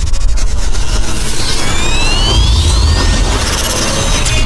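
Cinematic intro sound effects: a deep, steady rumble under a rising whoosh that climbs in pitch from about a second and a half in until past three seconds.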